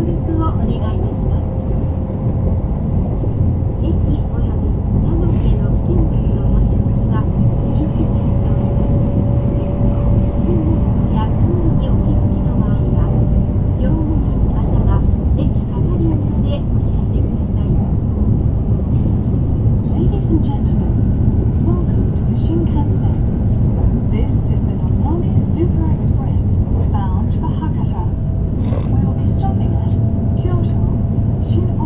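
Shinkansen bullet train running at speed, heard inside the passenger car as a steady low rumble, with a faint tone rising slowly through the first half.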